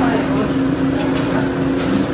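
Restaurant dining-room ambience: a steady low hum under a murmur of background chatter, with a couple of faint clicks about a second in.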